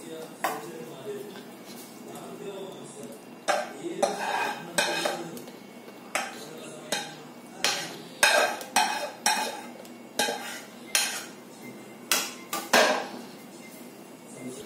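A steel spoon scraping and knocking against a kadai and a steel mixer-grinder jar while food is spooned from one into the other: soft scraping at first, then from a few seconds in a run of sharp, irregular clinks and knocks.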